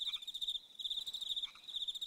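An insect trilling high and fast in bursts, each lasting under a second, with short gaps between them. No engine or exhaust note is heard.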